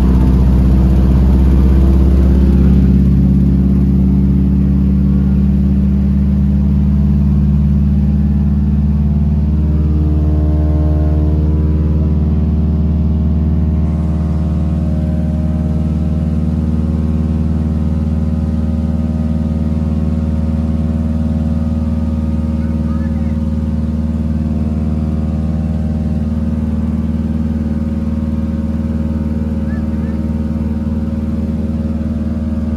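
Single-engine floatplane's piston engine and propeller, heard from inside the cabin: a loud, steady drone that eases down in the first few seconds as power is brought back, then holds at a lower setting while the plane runs on the water.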